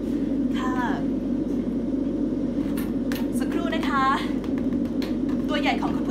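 A steady low drone throughout, with short high-pitched vocal sounds about a second in and again around four seconds.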